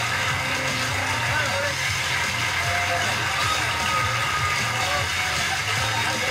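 Television studio audience clapping and cheering steadily, with music underneath.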